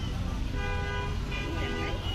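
A vehicle horn sounds one steady note for about a second and a half, starting about half a second in, over a continuous low street-traffic rumble.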